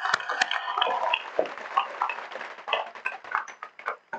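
Audience applause, a dense patter of many hands clapping that fades out near the end.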